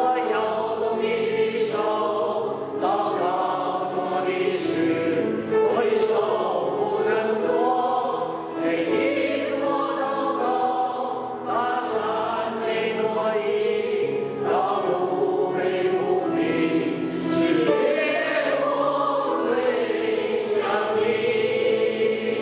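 A small group of voices singing a Mandarin worship song together, with many long held notes.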